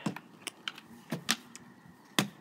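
Light plastic clicks and taps from rubber stamps and their ink pads being handled, about six irregular clicks in two seconds.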